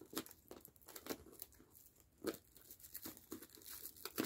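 Faint, scattered crinkling and tearing of plastic shrink-wrap being pulled off a sealed cardboard case, in short irregular bits with one louder crackle a little past two seconds in.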